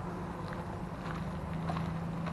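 Footsteps on a gravel and dirt path, a few soft separate steps over a steady low hum.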